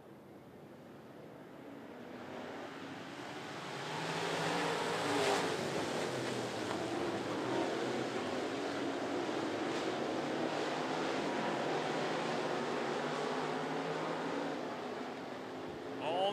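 Engines of a pack of dirt-track race cars running together, growing louder over the first four seconds as the field comes around, then holding steady. The field is bunched up under caution, lining up for the restart.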